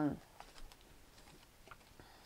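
Tarot cards being handled in the hands: a few light, scattered clicks and flicks of card stock as cards are sorted and drawn from the deck.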